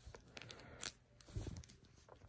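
Faint handling noise: fingers gripping and shifting a portable charger that is still in its clear plastic case. A few soft clicks and crinkles, the sharpest a little under a second in.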